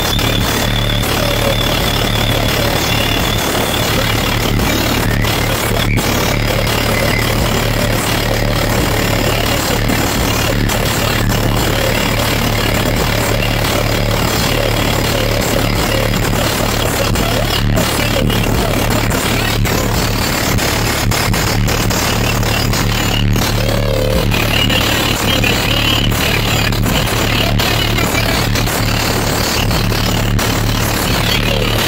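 Bass-heavy rap music played loud through HDC3 12-inch subwoofers in a car's trunk, heard from inside the cabin, with deep, sustained bass. The car is idling, and the system draws enough current to pull the voltage down to about 11.5 V.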